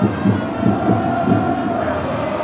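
Stadium crowd noise with supporters' drums thumping in uneven beats under a steady held tone.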